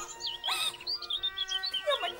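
Khmer Bassac opera ensemble music: high held notes with quick chirping ornaments from a melodic instrument, and a brief bright burst about half a second in.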